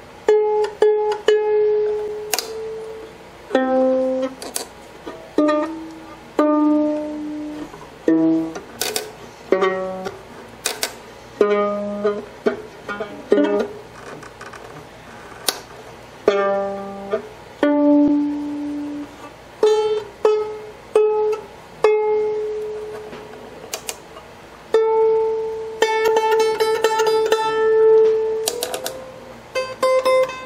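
Strings of an old violin plucked one at a time while its tuning pegs are turned, bringing the freshly set-up fiddle slowly up to pitch. Single plucked notes ring and fade at several pitches, and near the end one ringing string slides up in pitch as its peg is turned.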